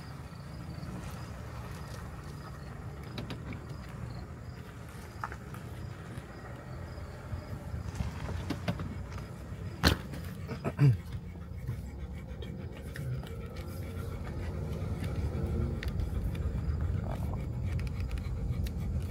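Car cabin noise: a steady low engine and road hum, growing louder over the last few seconds as the car gets moving. A sharp click about ten seconds in, followed by a couple of softer knocks.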